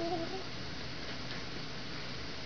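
A sleeping newborn baby's single brief coo right at the start, a short pitched squeak under half a second long, over a steady background hiss.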